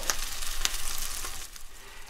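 Slices of black pudding sizzling in a dry frying pan, frying in the fat from the pudding itself, with a couple of sharp crackles in the first second. The sizzle fades down near the end.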